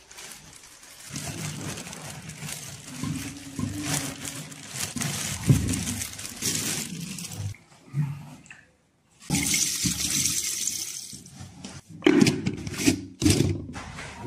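Liquor poured from a plastic jerrycan into a glass jar of honeycomb, gurgling and splashing as it fills, with plastic bag rustling and a few knocks near the end.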